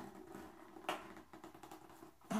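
Small cardboard box being handled and pried at by its flaps: faint scraping and rustling of cardboard under the fingers, with one sharp click about a second in.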